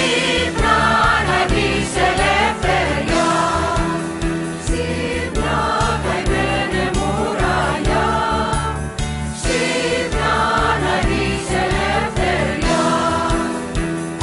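A Greek song: singing over instrumental backing with a steady, repeating bass line.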